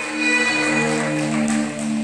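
A live rock band playing, with long held chords.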